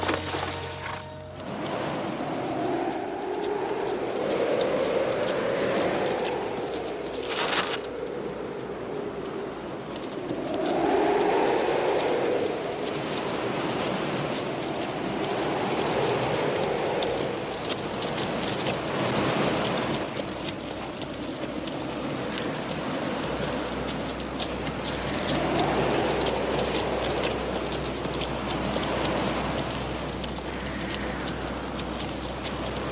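Wind blowing in gusts through an empty street, swelling and dying away every five or six seconds.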